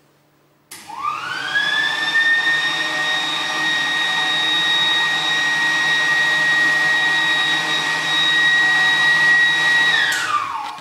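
Electric air blower switched on about a second in: its motor whine rises quickly to a steady high pitch over a rush of air through the hose and holds steady, then begins to wind down at the very end as it is switched off.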